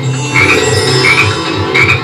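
Frog-croak sound effects from a Bally Wulff Baba Jaga gaming machine's speaker, heard as three short croaks spaced well under a second apart, during the game's frog bonus feature. The game's background music plays underneath.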